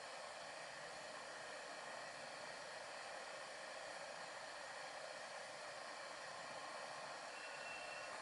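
Steady, faint hiss with no distinct events: the room tone and recording noise floor, with nothing else standing out.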